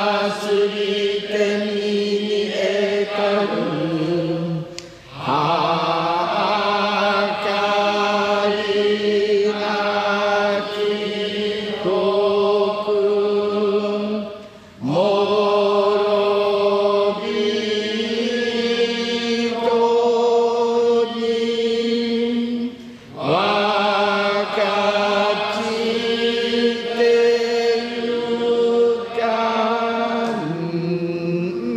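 A Buddhist priest's voice chanting Jodo Shinshu liturgy in long, sustained melodic phrases. He breaks off three times for a breath, about every eight to nine seconds.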